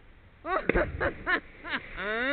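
A person jumping feet-first into a river lands with a splash about three quarters of a second in. Several short whooping shouts, each rising then falling in pitch, come around it.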